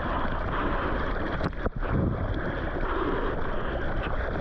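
Water splashing and rushing around the nose of a surfboard as it is paddled through choppy sea, picked up close by a board-mounted camera, with water and wind buffeting the microphone.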